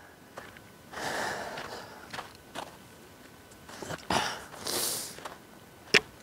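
Footsteps on a snow-dusted golf green with soft rustles and breaths. A sharp knock comes just before the end as the flagstick is handled at the hole.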